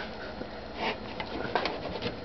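Faint clicks and scrapes of a kitchen knife and carving fork against a metal baking tray as a slice of pizza cake is pried loose.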